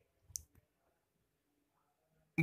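Near silence, with one faint short click about a third of a second in.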